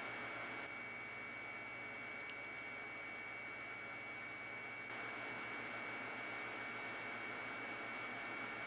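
Steady low electrical hum under a soft hiss, with a faint steady high-pitched whine. It gets slightly louder about five seconds in.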